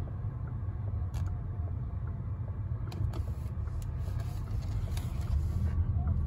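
Steady low road and tyre rumble inside the cabin of a 2023 VW ID.4 electric SUV rolling slowly, with no engine note, and a few faint clicks.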